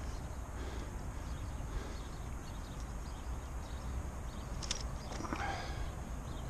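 Steady wind buffeting an outdoor microphone, with a couple of faint sharp ticks and a short scuffle near the end.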